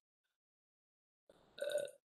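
Dead silence for about a second and a half, then a brief throaty voice sound from a man, a short grunt-like 'uh', near the end.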